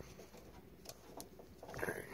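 Faint handling noise with a couple of sharp clicks as a strain-relief grommet on a furnace power cord is pressed into the hole of the sheet-metal junction box.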